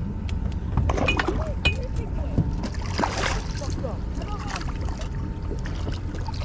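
A hooked kingfish being brought alongside a small boat: water splashing at the hull, with a louder splash about three seconds in, over a steady low rumble of wind and water, with scattered knocks.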